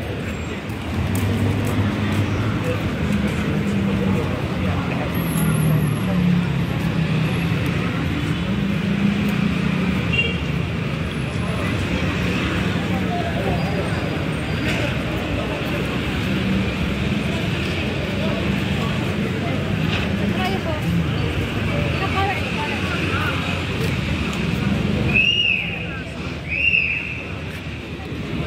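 Busy city-street ambience: steady traffic noise with passers-by talking in the background. Near the end come two short high-pitched chirps.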